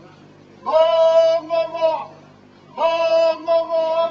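High singing voices holding long sustained notes in two phrases, the first starting just under a second in and the second about three seconds in, with a short pause between.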